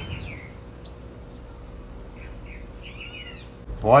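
Faint bird chirps, a few short twittering calls near the start and again about two and a half to three seconds in, over a low steady background hum.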